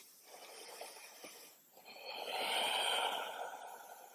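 A person breathing audibly close to the microphone: a faint breath in the first second or so, then a longer, louder breath of about two seconds.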